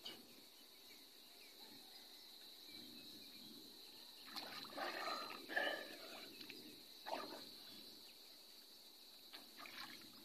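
Water splashing and sloshing as a person moves through the sea inside a bamboo fish trap. It comes in a cluster of splashes about four to six seconds in, one more near seven seconds and a faint one near the end, over a thin steady high tone.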